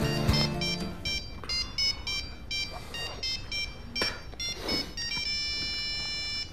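Mobile phone ringtone: a quick melody of short electronic beeps at changing pitches, ending on a longer held note, while background music fades out in the first second.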